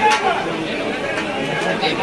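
Crowd of spectators chattering, many voices overlapping with no single voice standing out.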